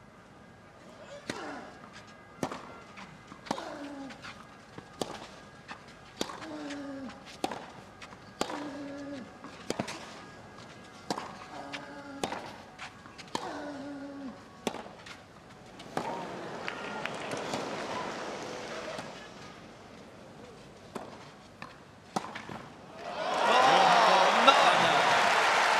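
Tennis rally on a clay court: racket strikes on the ball about once a second, most followed by a player's short grunt falling in pitch. The crowd swells briefly midway through the rally. About a second before the end, crowd cheering and applause break out, louder than anything else.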